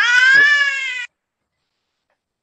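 One long, high-pitched wailing cry over a video-call microphone, cut off abruptly about a second in.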